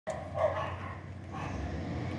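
A dog barking twice, short barks about a second apart, over a low steady rumble.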